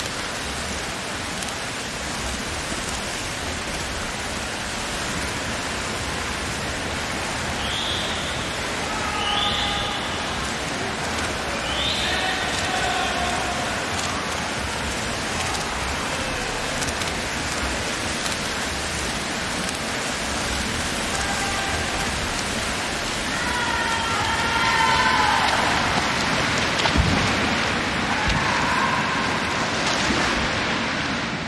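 Steady hiss of swimmers splashing in a race, mixed with the crowd noise of an indoor pool. A few short shouts rise above it, a group about 8 to 13 seconds in and more near the end.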